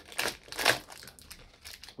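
A candy's plastic wrapper crinkling as it is handled, with two louder rustles in the first second and fainter ones after.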